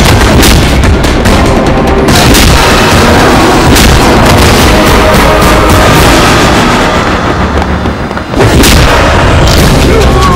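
Fight-scene soundtrack: a loud action score laid over heavy punch and impact sound effects and booms, the hits coming irregularly, some about a second apart. The sound drops briefly just after eight seconds, then another hit lands.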